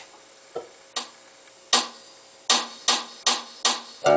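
Sharp clicks, a few at uneven intervals, then four evenly spaced a little under half a second apart: a count-in just before the song's acoustic guitar comes in.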